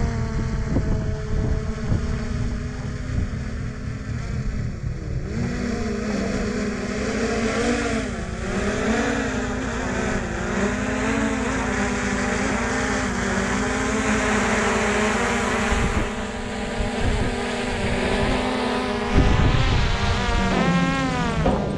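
Quadcopter camera drone hovering close by and setting down on a sloped car hood: a steady buzzing whine from its propellers that wavers in pitch as the motors correct, over a low rumble of rushing air. About a second before the end the whine breaks off and shifts in pitch.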